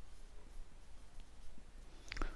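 Faint writing sounds, a pen moving on a surface with a few light ticks, over low room noise.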